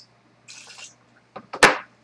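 A short splash of liquid poured into a cocktail shaker, then a couple of light clicks and a sharp knock about one and a half seconds in as something is set down hard on the countertop.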